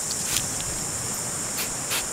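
A steady, high-pitched chorus of insects, with a few short clicks over it.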